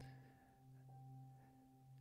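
Faint background music of soft, steady held tones, with no speech over it.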